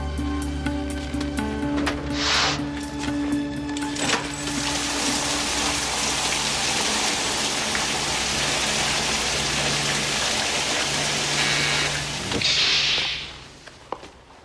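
Decontamination shower spraying down a hazmat suit: a steady hiss of spray sets in about four seconds in and cuts off about a second before the end, with short bursts of hiss about two seconds in and near the end. Film music with a pulsing beat plays underneath in the first seconds.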